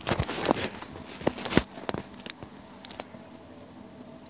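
Handling noise from fingers on a touchscreen device: a quick run of sharp clicks, taps and rustles for about two seconds, then a few scattered clicks over a faint steady hum.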